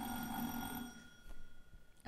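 A quiz buzzer gives a steady, high electronic ring, marking a contestant buzzing in to answer. It cuts off about a second in.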